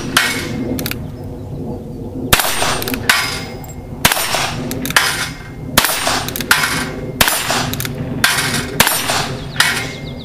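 Ruger Single Six .22 single-action revolver firing .22 Long Rifle rounds: a series of sharp cracks, each with a short ring after it, coming less than a second apart.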